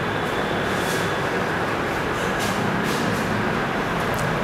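Steady rushing background noise with a low hum underneath, even in level throughout, with a few faint light scratches near the top.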